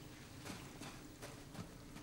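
Faint footsteps of a person running across sand, a little under three steps a second.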